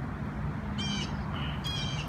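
A bird giving short, harsh calls, three in quick succession in the second half, over a steady low rumble.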